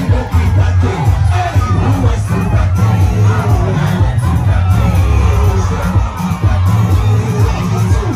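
Large crowd of teenage students cheering and shouting over loud music with a heavy, continuous bass.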